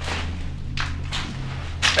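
Footsteps and clothing rustle of a person walking across a cellar floor: a few soft scuffing steps over a steady low hum.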